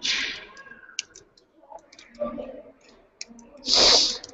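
Sporadic clicking on a laptop keyboard close to the microphone, with a short loud hissing rush near the end.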